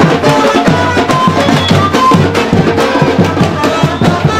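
A carnival street band's percussion section playing, surdo bass drums and other drums beating a fast, steady samba rhythm, with melody over the drums.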